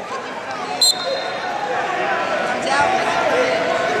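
Murmur of a crowd in a large arena hall, with a short, high referee's whistle blast about a second in.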